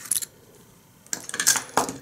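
Small metal parts of a pocket flashlight-lighter clicking and clinking in the hands as its parts are turned and handled: one click at the start, then a quick run of sharp clinks in the second half.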